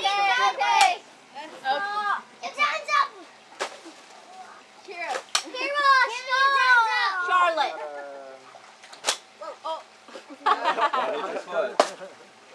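Young children shouting and squealing with excitement, with several sharp knocks of a stick striking a cardboard piñata.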